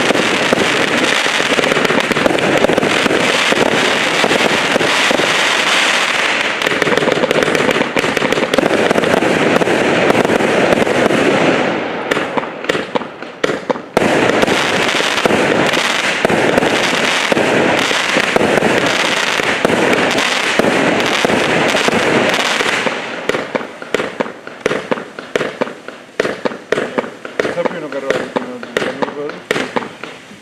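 A 200-shot 0.8-inch mixed firework cake firing in a dense, continuous barrage of launches and bursts. The barrage thins briefly about twelve seconds in, comes back full, and then breaks up into sparser, separate shots over the last seven seconds as the cake runs toward its end.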